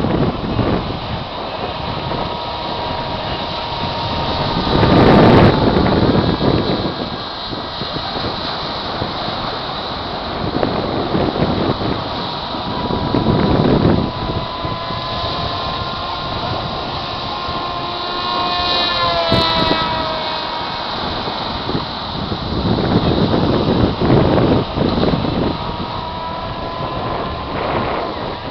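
Distant whine of an RC flying wing's motor and propeller, a thin steady tone that wavers and swings up and back down in pitch about two-thirds of the way through as the plane turns overhead. Gusts of wind buffet the microphone several times, loudest about five seconds in.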